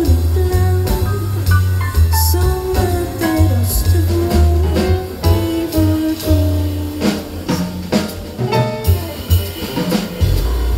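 Live jazz band playing: a woman singing over grand piano, a walking double bass and a drum kit with cymbals.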